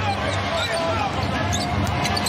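Basketball being dribbled on a hardwood court, under a steady murmur of the arena crowd.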